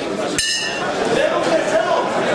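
Boxing ring bell struck once, ringing briefly: the signal that starts round two.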